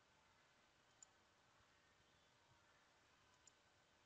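Near silence: room tone, with two faint computer mouse clicks, one about a second in and one near the end.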